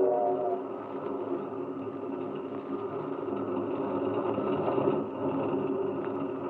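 Radio-drama sound effect of a train running: a steady rumble and clatter of wheels on track, after a held tone dies away about half a second in.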